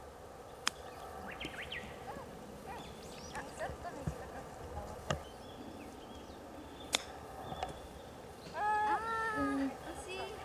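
Sharp clicks of a sand wedge striking a golf ball on a chip shot, one about a second in and two more later, over faint chirping birds. Near the end, the loudest sound is a high, drawn-out call held for about a second.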